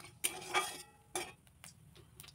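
Flat metal spatula scraping and clinking against a metal wok as spice seeds are stirred in hot oil. There are about four short strokes, louder in the first second.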